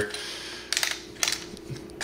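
Small plastic clicks and taps as fingers work the latch and shell of a trail camera's plastic case, in a couple of quick clusters about a second in.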